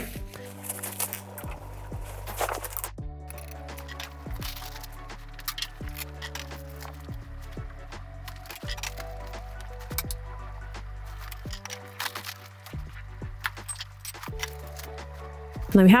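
Background music: a steady bass line whose notes change about every second and a half, with light higher notes and a soft beat over it.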